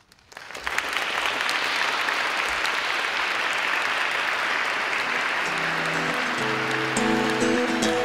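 Audience applause starting about half a second in and holding steady. Music comes in under it a little past halfway.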